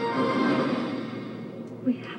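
Movie-trailer music with held notes, played back from the computer and picked up by the webcam microphone in the room. The music dies down about halfway through, and a short thump comes just before the end.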